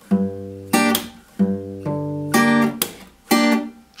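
Acoustic guitar picked slowly on a G minor barre chord: single bass notes alternate with the three treble strings plucked together, and the strings are slapped quiet after each chord, so every sound stops short. About six picked sounds in all.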